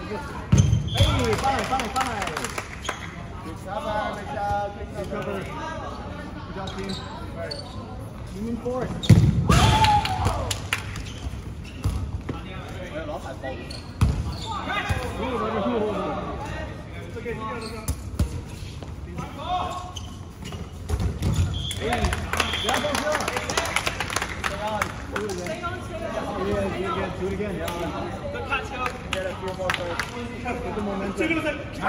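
Dodgeballs thudding on the gym floor and against players, with players shouting and calling out across the court. The hardest hits come about a second in, around nine seconds, and again near fourteen and twenty-one seconds.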